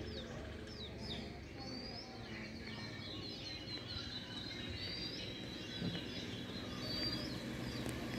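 Small birds chirping, many short, quick calls that sweep up and down in pitch, over a steady low background rumble.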